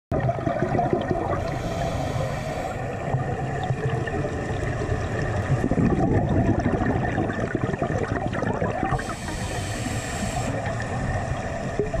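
Underwater sound of a scuba diver breathing through a regulator: a hissing inhalation about a second and a half in and another about nine seconds in, with bubbling, gurgling exhalation and water rumble between.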